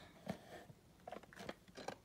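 Faint scuffs and small clicks of a cardboard toy box being handled and turned over in the hands.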